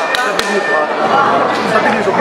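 Voices talking over one another, with two short sharp clicks in the first half second.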